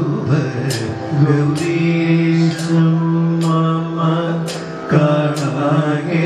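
Kathakali padam singing: a male voice holding long, slowly bending melodic lines, with a bright metallic strike keeping time about once a second.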